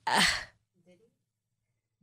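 A single short, breathy 'uh' of hesitation from a person's voice, lasting about half a second at the start.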